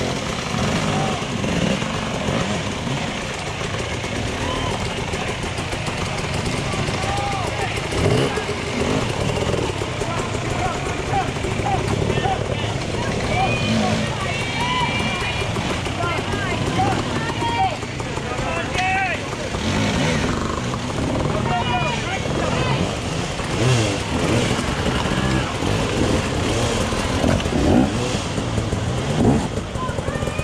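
Enduro dirt bike engines revving and falling back as riders climb a rocky section, mixed with spectators' overlapping voices and shouts.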